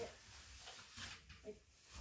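Near silence in a small room: faint room tone with a few soft rustles and a brief, barely audible murmur.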